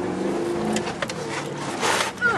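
Range Rover Classic's V8 engine running steadily under load while driving slowly off-road, heard from inside the cabin, with a few sharp knocks and rattles in the middle and a short rush of noise near the end.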